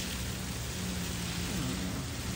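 Garden hose spray nozzle spraying water onto soil in a planting bed: a steady, rain-like hiss. A low steady hum sits underneath for much of it.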